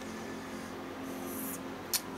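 Steady low background hum with a faint hiss. A short, soft high rustle comes about a second and a half in, and a single click just before the end.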